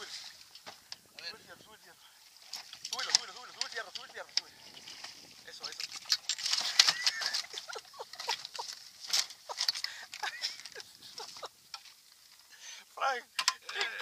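Indistinct voices talking and calling out, with scattered short clicks and knocks.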